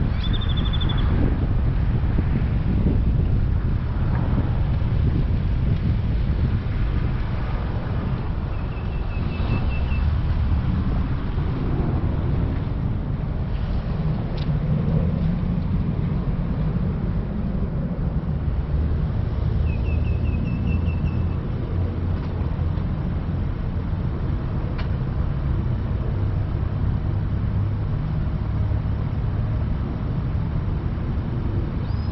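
Low, steady rumble of a car's engine and tyres as it creeps slowly along. A bird gives a short high trill of rapid repeated notes three times: right at the start, about nine seconds in and about twenty seconds in.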